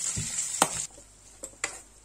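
Squid rings frying in hot oil with a loud sizzle as ground green chili paste goes into the pan. The sizzle cuts off suddenly a little before halfway, leaving a few sharp knocks of the spatula against the pan.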